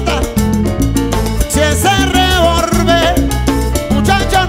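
A live Cuban dance orchestra playing a guaracha in salsa style. Bass and percussion keep a steady, busy rhythm under a melody line whose pitch bends and wavers.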